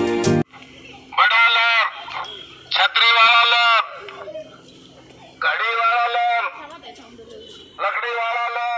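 A market vendor calling out through a handheld megaphone: four loud, drawn-out calls with a thin, harsh loudspeaker tone, each about a second long with short gaps between.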